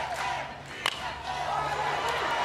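Stadium crowd noise with one sharp crack of a bat hitting the ball about a second in, the crowd swelling after the hit.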